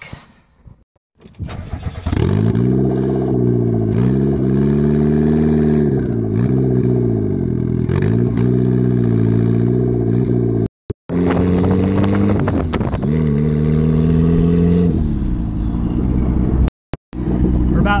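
Mazda Miata's turbocharged four-cylinder engine on a straight-pipe exhaust, coming in loud about two seconds in as the car drives off, its revs rising and falling every couple of seconds. The engine is running without an O2 sensor and is kept out of boost. The sound cuts out briefly twice, once near the middle and once near the end.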